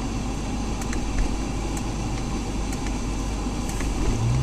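Steady road and engine noise inside a moving car's cabin, with a few faint ticks.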